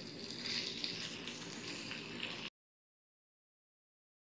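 Semolina-coated fish frying in shallow oil in a pan, a steady faint sizzle; the sound cuts off abruptly about two and a half seconds in, leaving silence.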